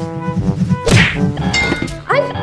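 A cartoon whack sound effect, one sharp hit about a second in, over electronic background music with a steady beat.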